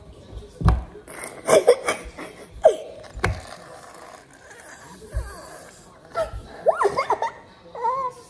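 A boy laughing in short separate bursts, some rising and falling in pitch, with a couple of sharp knocks in between.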